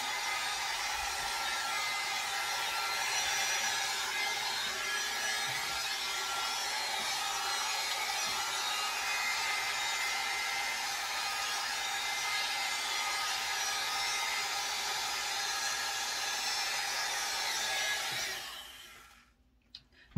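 Hot air brush running on low heat: a steady whir of its fan and rush of air. It winds down and stops about eighteen seconds in as it is switched off.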